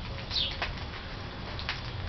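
A small bird chirping outdoors: one quick high chirp that slides downward in pitch about a third of a second in, with a few faint clicks later and a steady low rumble underneath.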